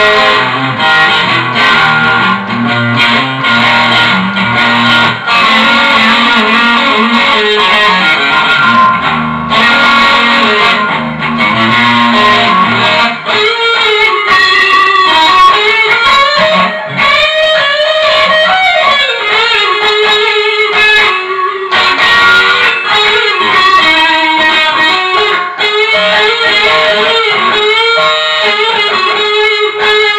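Stratocaster-style electric guitar with ceramic pickups playing lead lines with string bends. Lower accompanying notes sound under it for the first half and then drop out.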